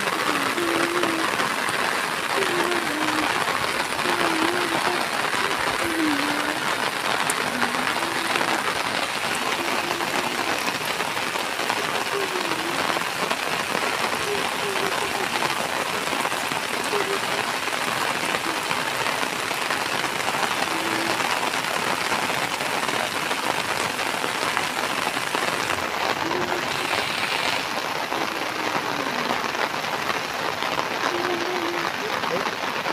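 Heavy rain falling steadily: a dense, even hiss that partly comes from drops pattering on an umbrella held over the camera.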